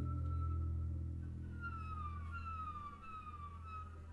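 Double basses in a bowed improvised duet. A low note, struck just before, rings and slowly fades. Over it, high thin bowed tones glide downward about five times in succession.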